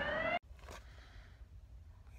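Emergency vehicle siren wailing, its pitch rising, cut off abruptly less than half a second in; after that only a faint background hiss.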